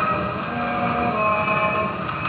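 A 1928 Victor 78 rpm shellac record played on an acoustic Victrola with a Tungs-Tone stylus: an orchestra's held notes, thin and capped in the treble, over a steady hiss of surface noise.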